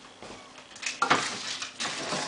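Rummaging in a fridge: short scrapes and knocks as things on the shelves are shifted and taken out. The loudest comes about a second in, with another near the end.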